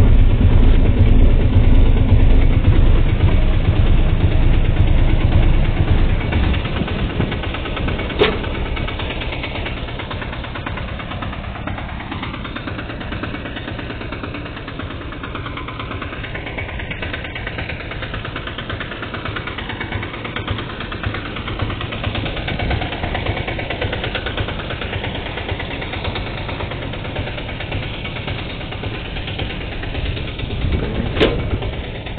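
Baxy Express cargo three-wheeler's engine idling, loud and close for the first six seconds or so, then quieter for the rest. A single sharp knock sounds about eight seconds in.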